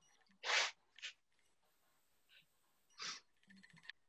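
Short, breathy rushes of air from a person, likely sniffs or quick breaths close to the microphone: one about half a second in, a weaker one just after a second, and another about three seconds in. A few faint ticks follow near the end.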